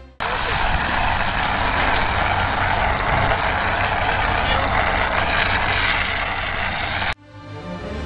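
Portable fire extinguisher discharging its powder, a steady loud hiss that cuts off abruptly about seven seconds in.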